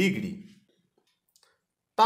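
A man's speech in Bengali trails off in the first half second. Then near silence, broken by a few faint clicks of a marker on a whiteboard.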